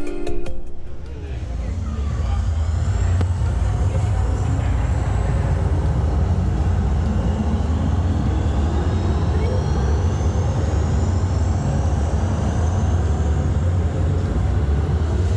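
A deep, steady electronic drone from a light-and-sound installation in a long tiled tunnel. Faint whistling sweeps rise slowly above it for several seconds. A few notes of music end just as it begins.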